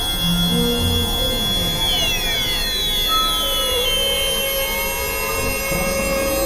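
Experimental electronic drone music: dense sustained synthesizer tones over a noisy hiss, with several high tones sliding downward in pitch through the middle.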